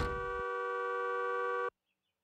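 A thump, then a car horn sounding one long steady blast of about a second and a half that cuts off suddenly.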